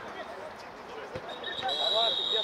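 Players shouting on the pitch, a single thud of a football being kicked just over a second in, then a referee's whistle starting one long, steady, shrill blast near the end.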